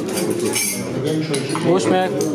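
Glass dishes and cutlery clinking on a set table, with voices talking over it.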